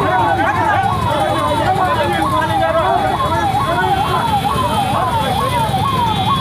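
Police vehicle siren cycling up and down in quick, even sweeps, a little under two a second, over the talk and shouting of a crowd.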